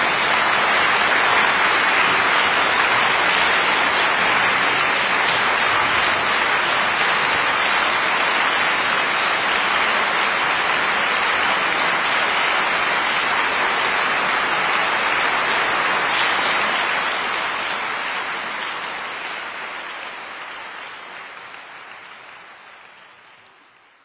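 Concert audience applauding steadily at the end of a string sextet performance. The applause fades out gradually over the last several seconds.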